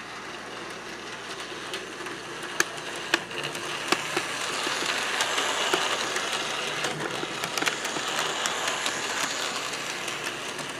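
HO scale model train running on the layout: the small electric motor and wheels of a Thomas the Tank Engine locomotive whirring along the track, pulling an open wagon. The sound grows louder as the train comes close, loudest about halfway through, with sharp clicks over it, likely from the wheels crossing rail joints.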